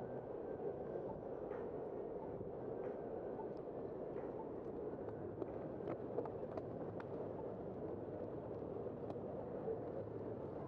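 Steady rushing noise of a bicycle being ridden along a city street: wind and tyre noise on the bike camera's microphone, with a few faint clicks and ticks scattered through it.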